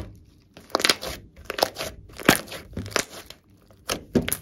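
Glossy slime being stretched, folded and squeezed by hand, giving several bursts of wet crackling and popping.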